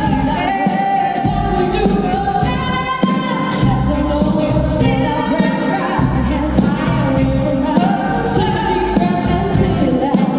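A live band playing a song while a woman sings the lead into a microphone, over electric guitars, keyboard and a drum kit keeping a steady beat.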